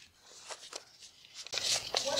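Sheet music pages rustling as they are handled and turned: a few soft crinkles, then a louder rustle of paper near the end.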